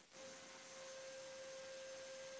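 Near silence: very faint hiss with a thin, steady electronic tone held level throughout.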